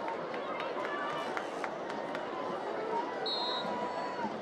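Stadium crowd murmur: many spectators in the stands chattering at a moderate, steady level, with a brief high-pitched tone a little after three seconds in.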